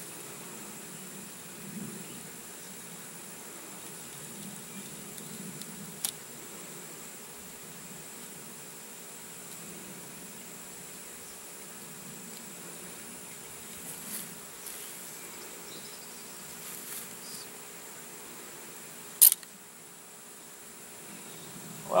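Insects calling in a steady high-pitched drone, over a faint outdoor hiss. A few faint clicks are scattered through it, and there is one loud, sharp click about three-quarters of the way through.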